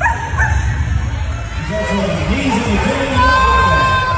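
Boston terrier yipping and whining with excitement, with one long high-pitched whine near the end, over voices and background music.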